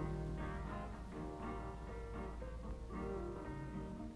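A guitar playing a slow, lo-fi blues figure, one note or chord about every half second, with a steady low hum underneath, as on an old portable reel-to-reel tape.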